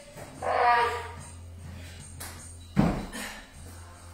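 Heavy dumbbells set down on a rubber gym floor with one sharp thud about three seconds in, over background music. A brief voice is heard near the start.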